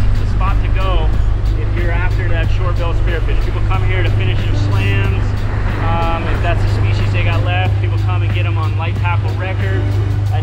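A man talking over background music with a steady beat, and a steady low hum underneath.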